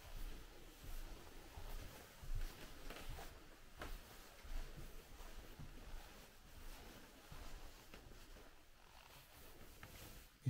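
Soft footsteps and handling bumps in a quiet room, irregular and low, with a few light clicks.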